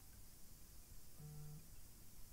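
Near silence: room tone, with one short, faint low hum a little over a second in.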